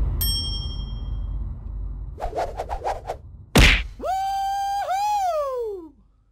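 A sequence of edited comic sound effects: a bright metallic ding, a quick rattle of about seven clicks, and a sharp hit. Then a held, horn-like note wavers and slides downward to a stop, like a cartoon 'fail' sting.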